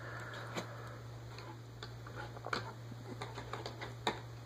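Faint, scattered light clicks and taps of hands handling wired LED matrix boards on a wooden desk, over a steady low hum.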